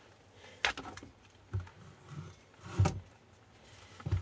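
About four light knocks and clicks from an e-bike battery pack's plastic casing being handled on a workbench, the loudest nearly three seconds in.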